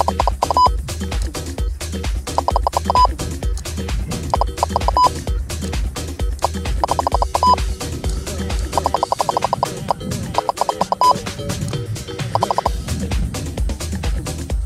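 Laser speed gun (Stalker LR) beeping: a short, rapid string of beeps ending in one longer tone, repeated about every two seconds as it takes range readings. Background electronic music with a steady beat plays underneath.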